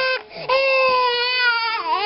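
A five-month-old baby crying while its nose is cleaned with a cotton swab: a short catch of breath, then one long wail, with the next cry starting near the end.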